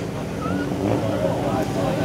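Outdoor background of faint distant voices over a steady low hum.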